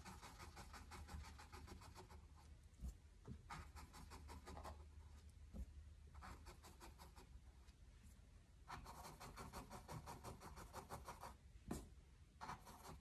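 Faint scratchy rasp of a paintbrush's bristles working acrylic paint onto canvas, in several runs of quick short strokes.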